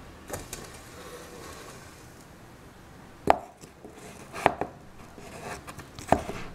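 A few sharp knocks: two faint ones in the first second, a loud one about three seconds in, then another loud one quickly followed by a lighter one about a second later.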